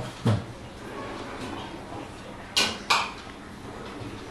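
Kitchen handling sounds: a dull knock about a quarter second in, then two sharp clacks about a third of a second apart near three seconds in, as a steel container and a pull-out cabinet drawer are handled.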